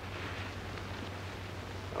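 The steady hiss and low hum of an old film soundtrack, with a faint soft rustle early on as a man crouches and handles something on the floor.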